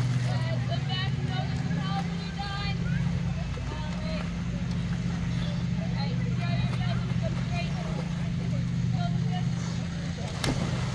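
A steady low mechanical hum throughout, with children's voices calling and shouting over it.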